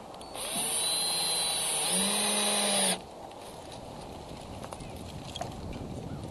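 Handheld two-way radio (walkie-talkie) giving a burst of static hiss with faint whining tones for about two and a half seconds, cutting off suddenly about three seconds in.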